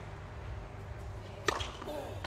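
Hushed tennis-court ambience with a steady low hum, broken by one sharp tennis ball strike about one and a half seconds in.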